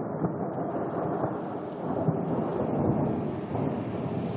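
Thunderstorm sound effect opening a song: a continuous low rumble of thunder with rain, no instruments yet.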